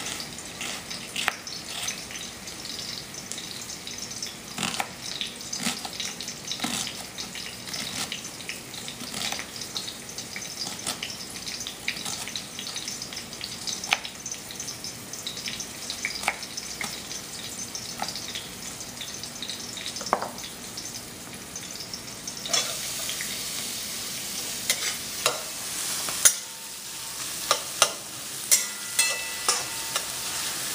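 Knife chopping a red onion on a cutting board, in irregular sharp knocks, over the steady sizzle of onions frying in oil. About 22 seconds in, the sizzle grows louder and a spatula scrapes and knocks in the metal kadai as the onions are stirred.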